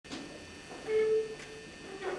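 A single held musical note, steady in pitch, lasting about half a second, then a shorter, fainter note at the same pitch: the opening pitch of a chanted responsory.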